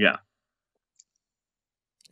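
Near silence, with the recording dead quiet between words, broken once by a faint click about a second in.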